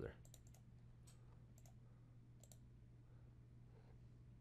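Near silence over a steady low hum, with several faint computer mouse clicks in the first two and a half seconds as points of a polyline are picked.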